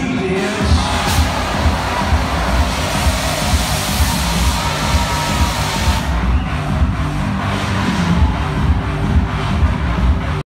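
Electronic dance music played loud over a club sound system, heard from the dance floor, with a steady kick-drum beat about twice a second. A rush of high noise over the beat cuts off suddenly about six seconds in.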